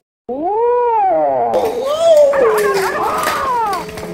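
Drawn-out howling calls that rise and fall in pitch. One comes alone just after a sudden cut, and from about a second and a half in several overlap over a noisier backing.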